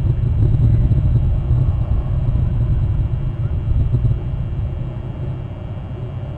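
A loud, unsteady low rumble that eases off a little near the end, with no bird calls standing out.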